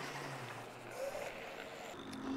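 Faint outdoor wind and road noise from a moving scooter, with low music notes fading out in the first second.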